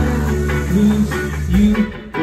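Live rock band playing loud: electric guitar over bass and drums.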